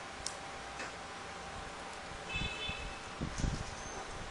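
Folded paper origami units being handled and pushed into place: a few faint light ticks and soft low bumps over a steady background hiss, the bumps loudest in the second half.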